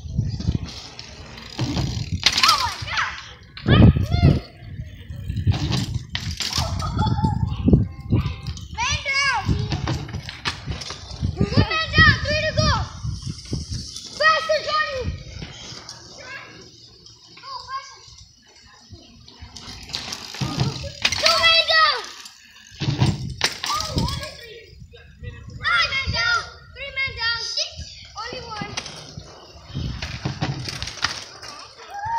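Children's high voices shouting and calling out in repeated bursts, with a low rumble underneath.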